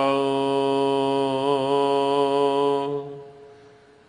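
Gurbani kirtan: a held sung note over harmonium accompaniment, steady with a slight waver, fading away about three seconds in.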